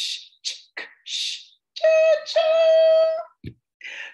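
A woman's voice imitating a train: quick, rhythmic 'ch'-like hissing chuffs, about two a second, then a two-part high 'choo-choo' whistle, the second part held for about a second.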